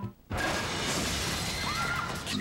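After a short silence, a sudden loud crash like shattering, followed by a long hissing wash, with trailer music.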